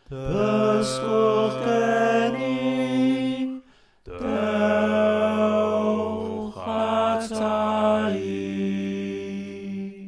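Layered choral vocal harmonies singing the slow closing bars of a song in 3/4 time, holding sustained chords. The first phrase breaks off about three and a half seconds in, and after a brief pause a longer final phrase is held to the end of the song.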